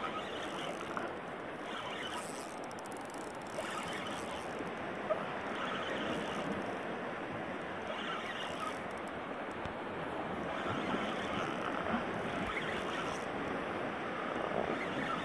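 Gentle water lapping and sloshing against a plastic kayak hull, with a few light knocks, one a little louder about five seconds in.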